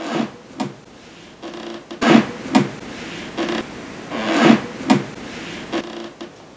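A run of short rustles and scrapes close to the microphone, like cloth brushing against it. There are about half a dozen, the loudest about two seconds in and again past four seconds.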